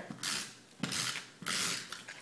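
Adhesive tape runner drawn along the edges of a cardstock layer, its mechanism whirring as it lays tape, in three strokes of about half a second each.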